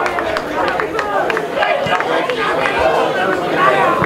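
Several people talking and calling out at once at an amateur football match, the words indistinct.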